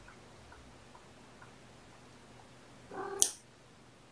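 A kitten held for a nail trim gives one short meow of protest about three seconds in, ending in a sharp click. A few faint small clicks come before it.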